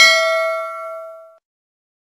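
Bell 'ding' sound effect of a notification-bell click, struck once with a sharp click at the start and ringing on several steady tones that fade away after about a second and a half.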